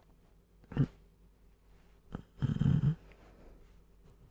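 A man's sleeping breaths close to the microphone: a short sharp breath about a second in, then a longer, low rumbling breath like a snore about halfway through.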